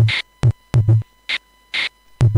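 Homemade kick drum and snare samples, built from Korg Monotron sounds, triggered by hand from the Yamaha SU200 sampler's pads. Short, deep kick hits come at the start, about half a second in and near one second. Noisy snare hits follow at about 1.3 s and 1.8 s.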